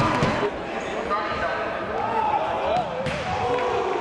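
Backing music cuts off in the first half-second, leaving the live sound of an indoor football game in a large, echoing sports hall: players' and spectators' voices calling out, and a few sharp knocks of the ball, the clearest about three seconds in.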